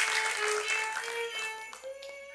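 Solo violin playing a slow, sad melody of long held notes, meant to set a tearful mood. Applause dies away under the first notes.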